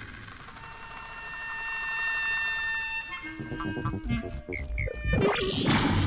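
Electroacoustic music for clarinet and tape: held tones fade away, then from about halfway a flurry of short, quick notes and pitch glides builds to a loud noisy burst near the end, where a recorded voice on the tape says "I'm sorry."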